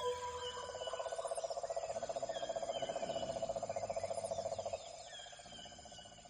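Nature ambience: a fast, evenly pulsing trill with scattered short bird chirps above it. The trill drops in level about five seconds in and the whole fades out.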